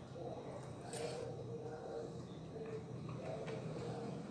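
A person chewing a mouthful of pasta, with faint mouth sounds and a soft click about a second in.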